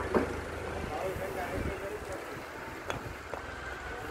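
Wind rumbling on the microphone, with faint voices and a few sharp clicks near the end.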